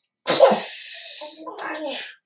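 A person's sudden, loud, breathy vocal burst that fades over about a second, followed by a short bit of voice near the end.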